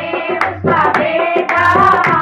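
A group of women singing a Hindu devotional bhajan in folk style, with steady rhythmic hand clapping, several claps a second, and a dholak drum keeping the beat.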